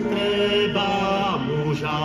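Two men singing a Moravian folk song together into a handheld microphone, holding long notes; the melody steps down to a lower held note about one and a half seconds in.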